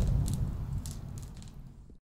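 Tail of a fire sound effect: a low rumble with scattered short crackles, fading steadily away.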